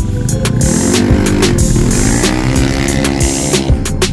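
A motorcycle engine rising in pitch over about two seconds, then falling away, as it passes by, over background music with a drum beat.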